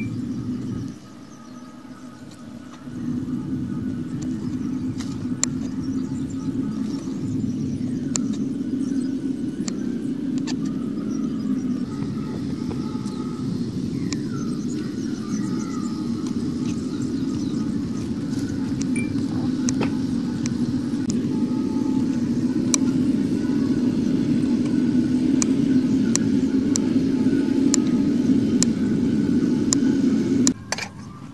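Kitchen knife slicing bitter melon on a wooden cutting board, faint sharp clicks now and then. Under it runs a loud, steady low rumble that drops out for a couple of seconds about a second in.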